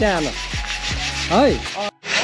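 Steel bars being hand-sanded to prepare them for painting: a repeated rubbing, with squeals that rise and fall with the strokes. It cuts off suddenly just before the end.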